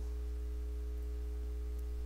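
Steady low electrical hum on the recording line, with a few fainter steady higher tones held over it and nothing else happening.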